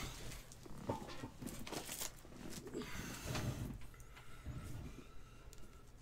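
Plastic card supplies (penny sleeves and top loaders) being handled on a tabletop: intermittent rustling with light clicks and knocks.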